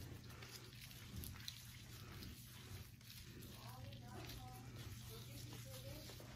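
Faint rubbing and squishing of plastic-gloved hands massaging lotion into bare feet, over a low steady hum. Faint voices talk in the background from about halfway in.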